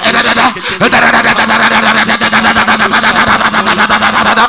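A man praying in tongues loudly into a microphone: a rapid, unbroken run of repeated syllables, with a brief pause for breath about half a second in.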